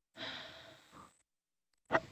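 A person sighing: one breathy exhale about a second long that fades out, then a brief sharp noise near the end.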